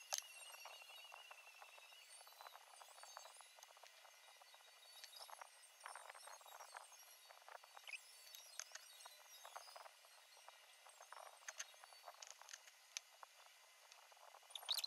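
Near silence with faint, scattered clicks and light rustling: metal tweezers and a dissecting needle picking at a flower on a plastic tray, handled in gloves. A sharper click comes right at the start.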